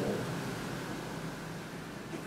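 Room tone: a steady, even hiss with no distinct sounds.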